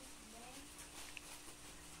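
Near silence: quiet room tone with a faint steady hum, and a brief faint voice near the start.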